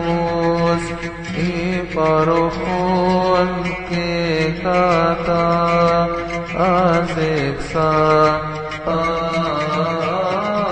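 A cantor chants a melismatic Coptic hymn on a long "o" vowel, holding each note and sliding between pitches over a steady low drone. About seven seconds in there is a wavering ornament.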